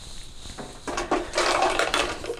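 Plastic syringe being capped and handled close to a clip-on mic: rustling with a few light clicks, starting about a second in.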